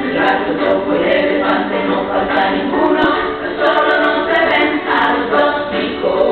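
A woman and young children singing a song together as a group.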